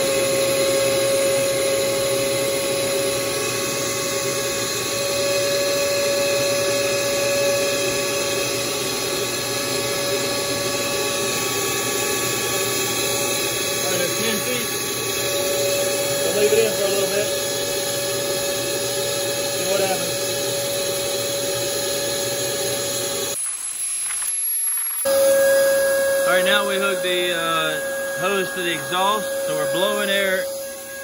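Wet/dry shop vac running with a steady, high whine, sucking through a half-inch PVC pipe pushed into holes drilled in a foam-filled boat hull to draw out water trapped under the floor. The sound drops out briefly about 23 seconds in, then resumes.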